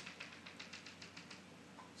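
Chalk tapping against a blackboard: a quick run of about a dozen light taps over the first second and a half, faint.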